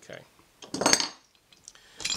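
Short metallic clinking and clatter about a second in, as a steel wheel puller is handled and taken off a bronze raw water pump after its shaft has come free; a faint click follows near the end.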